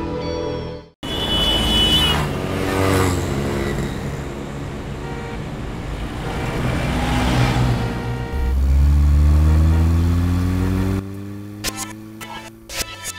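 Dramatic title music with whooshing swells. From about eight seconds in, a car engine accelerates under it, with a deep rumble and a pitch that rises steadily for about three seconds.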